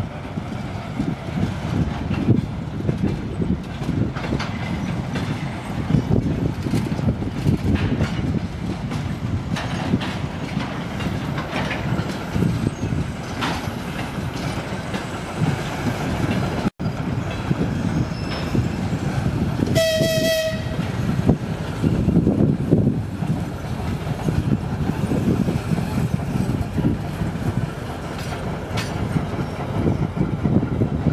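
TEM18DM diesel shunting locomotive and freight wagons rolling past, a steady low rumble with wheel and coupling clatter. About 20 seconds in, a horn sounds once, a short blast of about a second.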